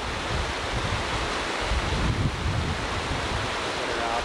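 Muddy floodwater rushing across a flooded wash, a steady broad rushing noise, with wind buffeting the microphone as a low rumble in the middle.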